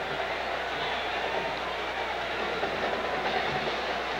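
Steady crowd noise from a large stadium crowd, heard through an old television broadcast recording with a low hum underneath.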